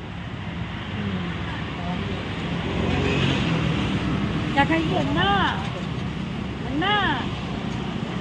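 Steady rumble of road traffic, with a couple of short rising-and-falling voice sounds in the second half.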